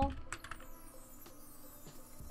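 A few light computer keyboard key clicks, spaced apart: several in the first second and one more near the end, over faint background music.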